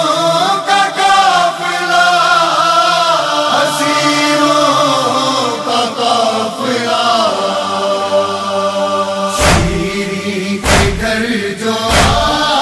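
Male voices chanting a slow, drawn-out noha (Shia lament) with long held notes that glide slowly. Near the end, two heavy thumps cut across the chant.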